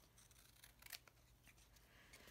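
Faint snips of scissors cutting kraft cardboard: a few quiet clicks about a second in.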